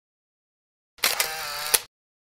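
Camera shutter sound effect about a second in: a click, a short steady whir, and a sharper click as it cuts off.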